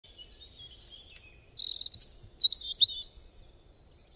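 Several small songbirds singing and chirping together, with rapid trills and quick whistled notes, dying down toward the end.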